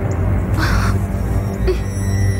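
Low, steady film background music with one short harsh caw a little over half a second in.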